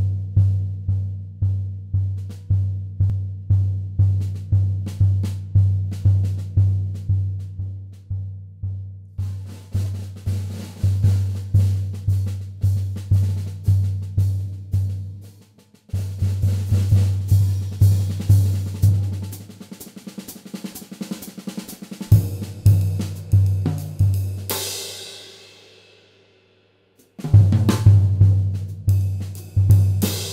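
Drum solo on a kit with seamless spun-aluminum shells and a wide-open, unmuffled 16-inch bass drum, played without a break to about halfway: a steady low drum beat at about two and a half hits a second with lighter strokes between. It pauses briefly a little past halfway, then comes back in choppier phrases, with a cymbal crash ringing out about four-fifths of the way through.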